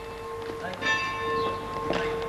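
Bells ringing with a steady, lingering tone, faint voices underneath.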